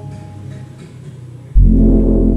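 Short logo jingle: the held notes of a rising run fade away, then about one and a half seconds in a sudden loud low hit lands with a sustained deep chord.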